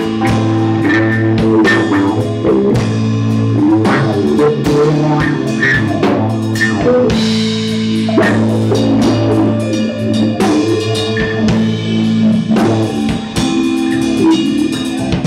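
Live rock band playing, with a drum kit keeping a steady beat under long held low notes and an upright bass.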